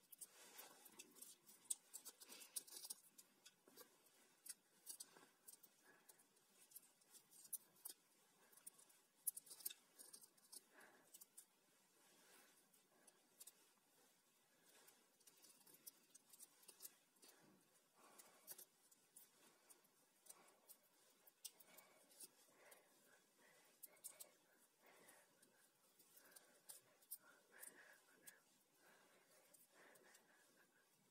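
Faint crackling and small ticking of electrical tape being wound tightly by hand around a twisted wire splice, in many short irregular bursts.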